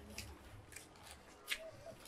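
A few faint, sharp mouth clicks and smacks of someone eating, the clearest about one and a half seconds in.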